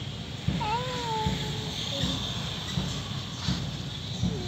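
A single high-pitched call that rises and then falls, starting about half a second in and lasting about a second. Behind it are a faint steady hiss and soft low knocks about every three quarters of a second.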